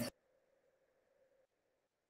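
Near silence: faint steady room tone with a thin hum, which drops out to dead silence about one and a half seconds in.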